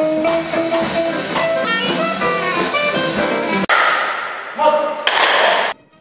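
Live jazz with an upright double bass playing pizzicato notes. About three and a half seconds in it cuts abruptly to a couple of brief, noisier snippets, then drops to quiet.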